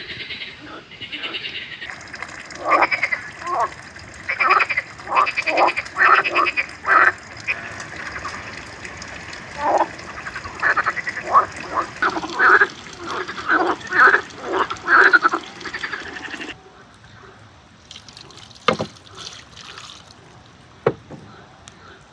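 Pond frogs croaking, a long run of loud repeated croaks in clusters, breaking off suddenly about sixteen seconds in. After that only a quiet background with two sharp clicks near the end.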